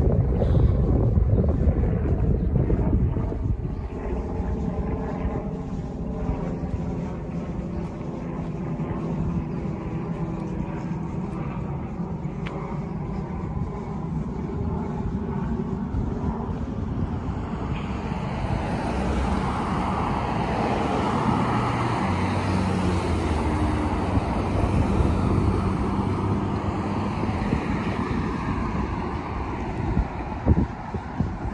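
Engine hum from passing traffic, a steady drone whose pitch drifts slowly, giving way to a broader rushing noise about halfway through, with wind buffeting the microphone.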